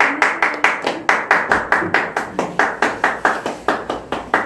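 Hands clapping in a steady, quick, even rhythm of about five or six claps a second, applauding the next speaker as he is called up.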